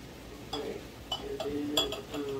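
A few light clinks and taps of a seasoning jar being handled and sprinkled over a bowl of cut-up steak, about four in all.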